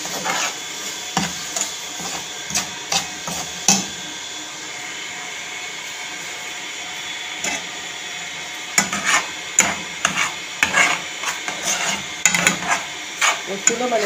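Spoon stirring semolina as it roasts in ghee in a non-stick frying pan: irregular scrapes and clicks against the pan over a faint steady sizzle. The stirring eases off for a few seconds in the middle, then picks up again.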